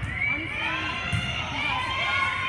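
Many young girls' voices shouting and cheering together in a gym, overlapping high-pitched calls rising and falling.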